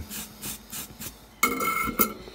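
Light rubbing and scraping as soldering tools are handled on the workbench, with a louder, ringing metallic scrape about one and a half seconds in.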